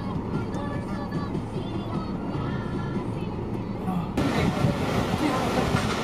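Music with a wavering melody plays over the low rumble of a car's cabin. About four seconds in, the sound switches abruptly to outdoor road-traffic noise.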